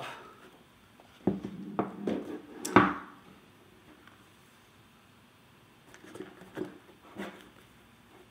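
Cardboard watch presentation box being handled: a run of rubbing and knocks as the box is worked out of its sleeve, the loudest a sharp click about three seconds in. Softer rustles and taps follow near the end as the hinged lid is opened.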